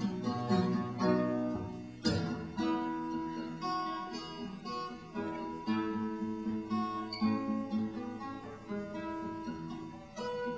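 Solo acoustic guitar playing without a voice: a run of picked notes and strummed chords, with a hard strummed chord about two seconds in.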